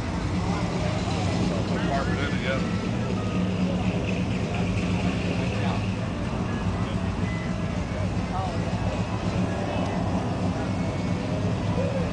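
A steady low engine hum, strongest in the first few seconds, under indistinct background voices.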